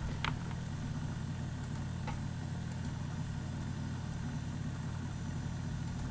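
Steady low hum with a few even pitches and no change in level, with two faint mouse clicks, one just after the start and one about two seconds in.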